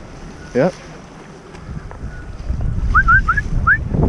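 Wind buffeting the microphone and rushing water on the open ocean, building up after about a second and a half. Near the end, four short rising chirps sound over it.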